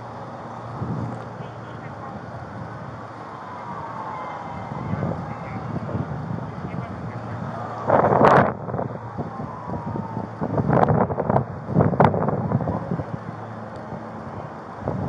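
Body-worn camera picking up wind on its microphone and street noise, with faint rising and falling tones and several loud bumps and scrapes against the microphone, the loudest about eight seconds in.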